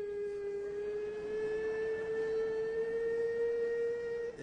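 A man's voice singing one long, very pure held note, high and almost whistle-like, that drifts slowly upward in pitch.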